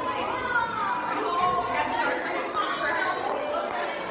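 Indistinct chatter of children's voices, high-pitched and rising and falling, with no clear words.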